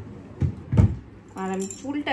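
Wrist bangles clinking lightly as the hands move to the head, with two dull thumps about half a second and just under a second in, and a short hummed voice sound near the end.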